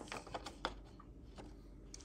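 A few light clicks and taps of a transfer sheet being laid into a printer's paper tray and the tray plate being pressed, mostly in the first half-second or so, then faint handling noise.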